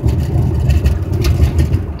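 Low, uneven rumble of a car in motion heard from inside the cabin, the road and running noise of the vehicle.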